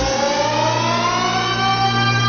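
Techno DJ set in a breakdown: the kick drum drops out and a held synth chord slowly rises in pitch over a steady bass note.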